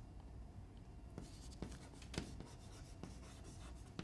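Chalk writing on a blackboard: faint scratching with light taps of the chalk as a word is written, starting about a second in.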